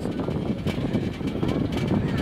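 Narrow-gauge (1000 mm) Wangerooge Island Railway train rolling slowly, heard on board: a steady low engine drone with occasional knocks and rattles.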